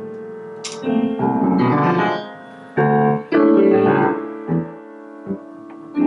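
Solo upright piano being played, struck chords and notes ringing on with the sustain. The loudest chords come about three seconds in, and the playing turns softer near the end.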